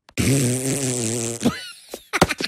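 Cartoon Minion sound from a Minions clip: a low buzzing noise held steady for over a second, ending in a quick rising squeak.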